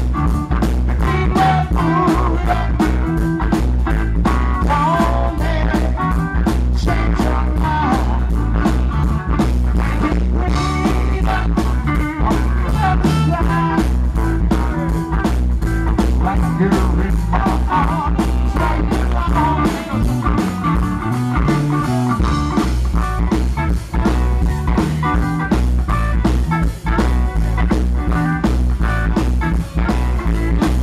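Live blues band playing with a steady beat: drum kit, electric bass and electric guitar.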